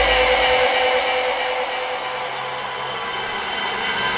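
Hardcore dance track in a breakdown: the beat drops out, leaving a wash of white noise with a few long held tones that slowly sinks in loudness.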